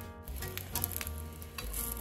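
Crepe batter sizzling faintly in a nonstick frying pan, under quiet background music.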